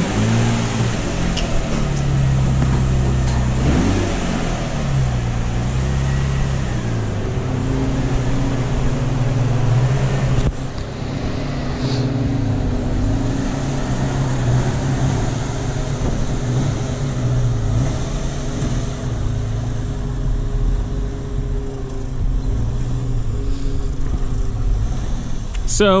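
Infiniti G35's V6 engine running at idle, its pitch wavering slowly up and down.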